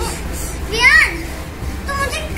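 A young child's voice: one short, high-pitched exclamation about a second in, over a steady low hum.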